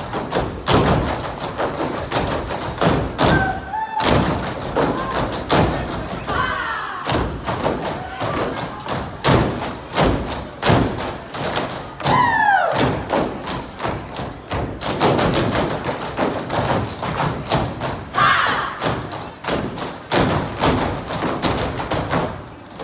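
A dance team's feet striking the stage in rapid, rhythmic unison stamps and taps, with music under it and a few short whooping calls from the crowd.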